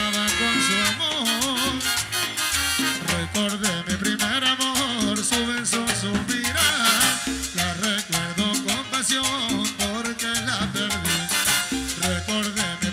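Live Latin tropical dance band playing a medley, with saxophones, trumpet and a steady rhythmic bass, and a man singing lead into the microphone.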